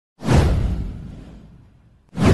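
A whoosh sound effect with a deep rumbling low end. It starts suddenly just after the start and fades out over about a second and a half.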